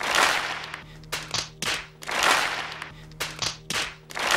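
Edited-in audience reaction: a crowd clapping and laughing in short swells over background music with a steady low note.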